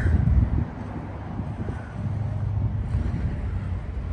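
Low outdoor rumble: wind buffeting the microphone, strongest in the first second, over a steady low engine hum of vehicles in the background.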